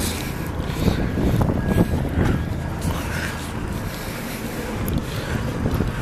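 Wind buffeting the microphone in irregular gusts, strongest in the first half, over a faint low steady hum.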